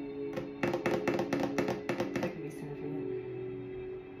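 A deck of tarot cards shuffled by hand: a quick run of card slaps and clicks, about six a second, starting just after the start and stopping a little past two seconds in. Steady ambient music plays underneath throughout.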